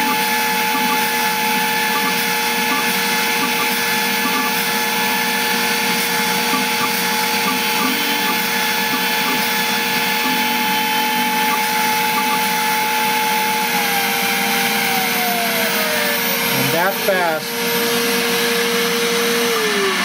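LPKF 93s PCB milling machine drilling 0.5 mm holes: the high-speed spindle, run at 52,000 rpm, whines steadily over the rush of the dust suction, with faint regular ticking. About fourteen seconds in the spindle's whine falls in pitch as it spins down at the end of the drilling run, a brief whirring sweep follows, and just before the end a second motor's tone also falls away.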